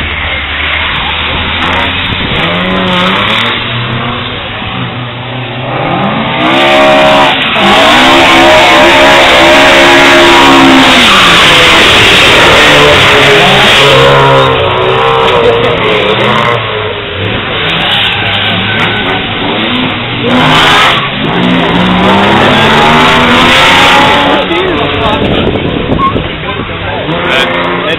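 Classic Ford cars driven hard on a drift circuit, engines revving up and down as the throttle is blipped and held through the slides. The loudest stretch is a car passing close from about eight to fourteen seconds in, with another rise near the end.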